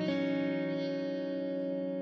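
Electric guitar holding a chord that rings on steadily, after a chord change right at the start.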